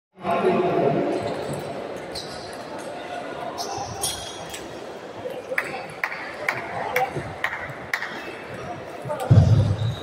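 Table tennis ball bouncing, a run of sharp clicks about two a second in the middle, over the echoing hum of voices in a large sports hall. A short, loud, low sound comes near the end.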